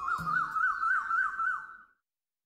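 A high warbling tone, siren-like, that swings up and down about four or five times a second and fades out near the end.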